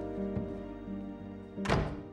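Soft film score of sustained notes, with a single dull thud near the end.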